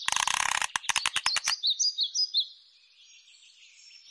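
A fast clattering run of clicks that thins to about ten sharp clicks a second and stops about a second and a half in, followed by birds chirping, with a few louder chirps and then a faint steady twittering.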